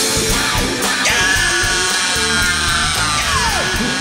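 Live rock band playing a loud, dense passage, with a long note that slides steadily down in pitch from about a second in to near the end.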